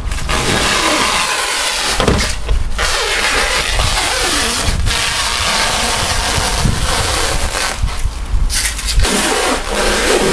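Clear plastic stretch-wrap film being pulled off a hand-held roll and stretched over a car body: a loud, continuous crackling hiss, broken by short pauses about two and a half seconds in and again near the end.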